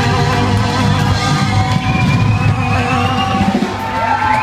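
Ska band playing live: horns hold long notes over the drums, with a few rising slides near the end.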